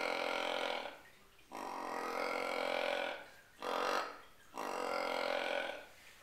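A deer grunt tube call blown as a buck roar: a series of four long, drawn-out, low grunts, the third one short. It imitates a bigger, dominant buck and is used during the rut to draw in a buck.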